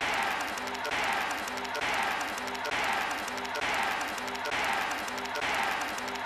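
A cartoon soundtrack snippet less than a second long, looped over and over about once a second: a hiss with a short low tone in each repeat.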